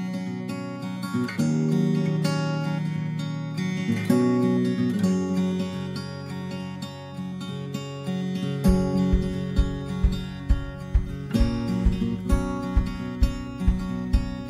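Background music on acoustic guitar, with a steady low beat coming in a little past the middle, at about two beats a second.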